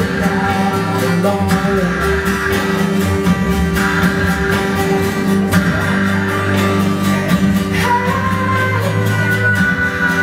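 A live song: a woman singing long held notes over guitar.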